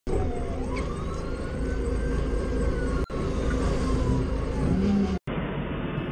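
A forklift engine running steadily, with a single slow whine that rises and then falls over it for about four seconds. About five seconds in, the sound cuts to a quieter engine running.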